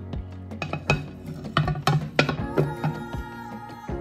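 Background music, with a quick series of sharp knocks and clicks in the middle.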